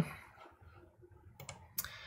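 Computer mouse clicks: a couple of faint clicks about a second and a half in, then a sharper one just before the end.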